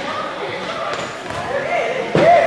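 Echoing sports-hall sound during a handball match: shouting voices of players and spectators, with a handball bouncing on the court floor.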